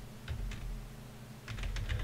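Computer keyboard typing: a few separate keystrokes, then a quick run of several keys near the end.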